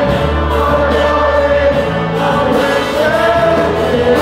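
Worship singers on microphones and a standing congregation singing a Christian worship song together, with a steady low bass underneath.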